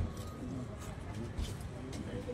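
Faint voices of several people talking in the background, with a brief low bump about two-thirds of the way through.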